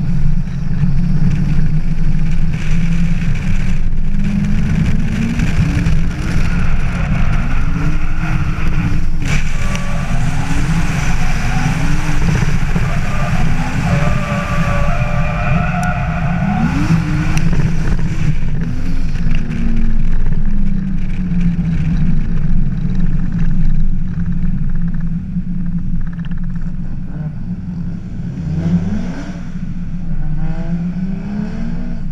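Nissan Laurel C35 drift car's engine revving hard during a drift run, its pitch rising and falling again and again through the middle with tyre squeal. Later it settles to a lower, steadier run, then rises again near the end.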